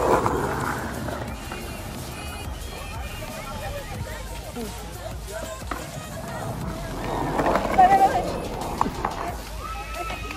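Skateboard wheels rolling over concrete under background music, with voices; a brief louder vocal burst about three quarters of the way through.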